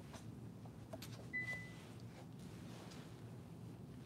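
Quiet room hum with a few faint clicks, and one short, steady high-pitched electronic beep about a second and a half in.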